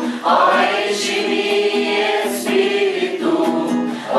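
A small group of voices singing a worship song together in unison, with acoustic guitar accompaniment.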